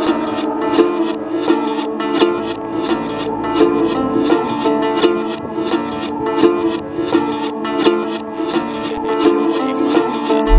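Komuz, the Kyrgyz three-stringed plucked lute, strummed in fast, even strokes in a remix track, with no bass or drums underneath.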